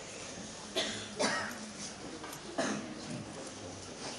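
Audience members coughing, a few short coughs about a second apart and again near three seconds, over the low murmur of a quiet hall.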